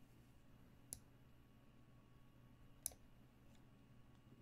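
Two sharp clicks about two seconds apart as a chess piece is moved in an online game, the second the louder, over near silence with a faint steady hum.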